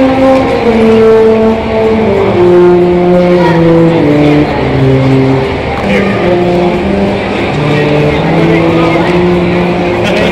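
A Salvation Army brass band of cornets, tenor horns, euphoniums and a tuba, playing a slow piece in several parts: held chords that move step by step.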